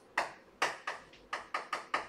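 Chalk striking and scratching on a chalkboard while drawing a box: a run of short, sharp taps that come quicker in the second half, about four a second.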